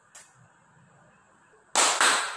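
A faint metallic click of a spoon against a steel bowl, then near the end a single loud, sharp hand clap.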